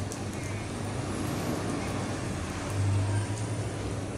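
Steady outdoor noise of rain falling, heard through an open window, over a low rumble that swells briefly about three seconds in.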